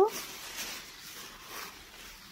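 Thin crumpled packing wrap rustling and crinkling as a hand pulls it open, in a few soft bursts.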